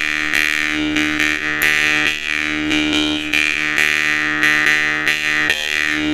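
Glazyrin Petrel jaw harp played: a buzzing drone on one low note, with an overtone melody gliding up and down above it, plucked about twice a second in a steady rhythm.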